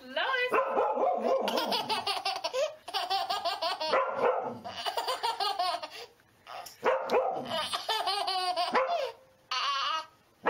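A baby laughing hard in long runs of quick, high giggles, with short breaks about six and nine seconds in.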